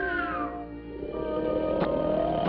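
Cartoon orchestral score with a sliding, whistle-like tone that glides down in the first half second, then after a brief dip a second tone that glides slowly upward.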